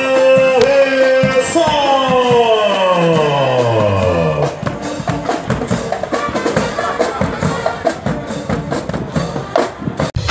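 Marching band of brass and drums playing: a held brass chord, then the whole chord sliding down in pitch over about three seconds, followed by drums and scattered percussion strikes.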